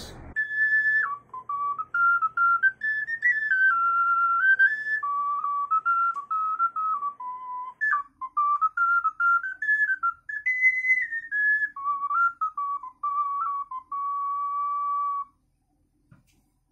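Pendant ocarina played solo: a clear, pure-toned melody moving in small steps, ending on a long held note.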